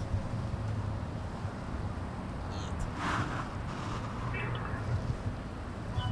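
Low steady hum of a car engine idling, heard from the car, with a brief rustle about three seconds in.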